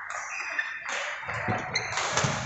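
Badminton rally: short sharp racket strikes on the shuttlecock and brief squeaks of shoes on the court mat, over a background of voices.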